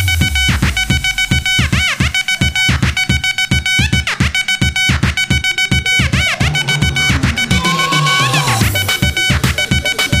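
Electronic dance music from a DJ set: a fast, steady beat with repeating rising-and-falling synth sweeps over it.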